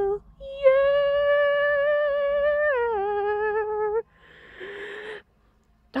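A person humming one long, steady note that steps down in pitch about three seconds in, followed by a short breathy exhale.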